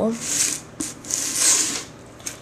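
A hand rubbing and shifting a homemade paper-mâché-and-Bondo prop helmet: two brushing scrapes with a small click between them.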